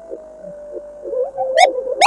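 Cartoon soundtrack with a steady held tone and quieter sounds beneath it, then a voice starting up near the end.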